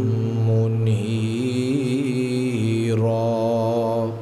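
A man's voice chanting an Arabic invocation in a slow, melodic style into a microphone, holding long notes with small wavers in pitch. The phrase ends near the close.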